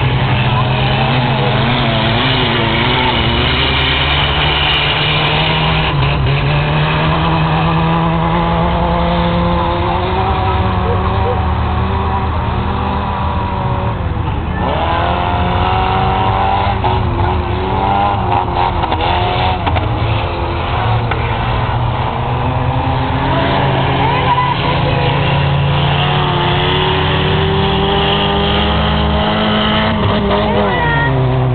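Engines of several small race cars lapping a dirt track, their pitch rising and falling as they accelerate, shift and pass, with a long rising run about halfway through.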